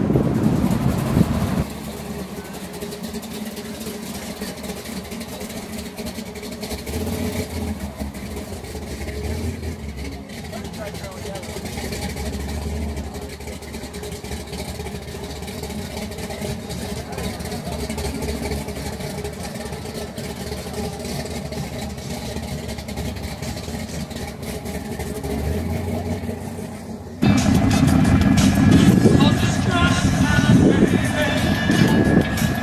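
Old hot-rod car engines rumbling low as the cars drive off across a parking lot, for about the first second and a half and again over the last three seconds. In between, a quieter stretch of indistinct crowd chatter.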